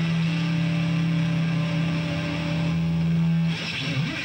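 A live blues-rock band, with an electric guitar played flat across the lap holding one long sustained low note. The note stops about three and a half seconds in, and a brighter burst of full-band sound takes over.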